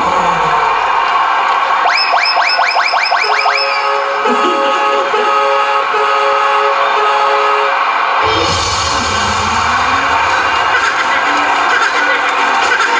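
Loud dance-pop music played over an arena PA, with a crowd cheering underneath. About two seconds in, the bass drops out for a run of quick rising sweeps and then a few held notes. The heavy bass beat comes back about eight seconds in.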